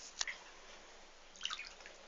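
Small wet clicks and drips in a bathtub with a cat: one sharp tap just after the start, then a quick run of several clicks about a second and a half in.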